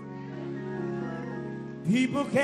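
Gospel band accompaniment holding soft, sustained chords, then a man's singing voice comes in loudly near the end, sliding up in pitch.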